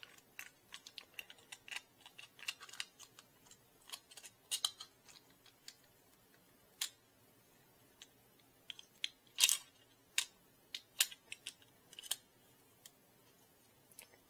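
Hard 3D-printed plastic extruder parts clicking and tapping against each other as they are handled and fitted together by hand. The clicks are short and irregular, coming thick and fast in the first few seconds, then spaced out, with the loudest about two thirds of the way through.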